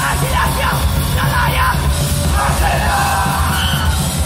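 Hardcore punk band playing live: a shouted lead vocal in short bursts over distorted guitar, bass and drums.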